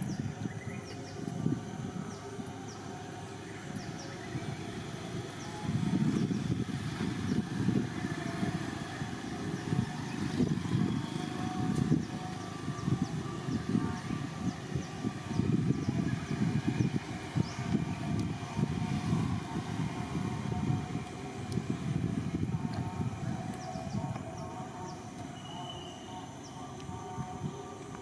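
Wind buffeting the microphone: a low, uneven rumble that swells and fades in gusts.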